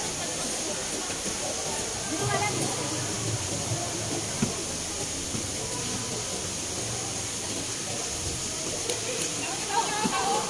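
Outdoor basketball game ambience: a steady hiss with faint, scattered voices of players and onlookers, and one sharp knock about four and a half seconds in.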